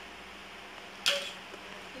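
A single short, sharp click about a second in, over a faint steady hiss.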